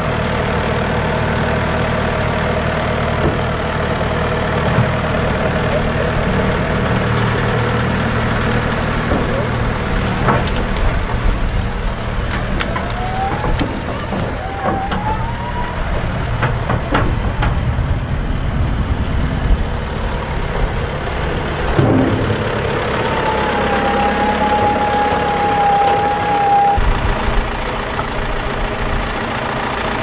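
John Deere tractor engine running steadily under load while the tipping trailer's hydraulics work. A whine rises in pitch about halfway through, and a steady whine is held for a few seconds later on. Scattered cracks of branches come as the load of brush slides off.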